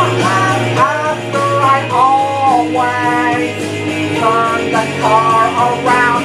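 A man singing along to a karaoke backing track of a guitar-driven rock song, his voice carrying the melody over a steady bass.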